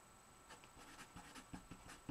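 Felt-tip marker writing on paper: faint, short scratching strokes that start about half a second in.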